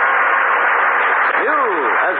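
The end of a radio music cue with held notes fading out, then a man's voice beginning to speak about a second and a half in.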